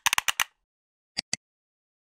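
Tail of an electronic outro jingle: a quick run of about five sharp percussive hits, then two more just over a second in.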